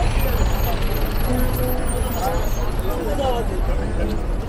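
Busy street ambience: scattered voices of passers-by talking over a steady low rumble.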